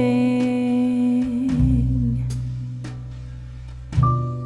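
Background Christmas music: a long held note with a low bass note under it, fading away over the second half, then a new note struck right at the end.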